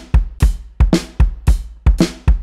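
Looped electronic drum pattern from a drum plugin played through an RC-505 mk2 loop station: kick and snare with hi-hats layered on top at turned-down gain, about three strikes a second in a steady beat.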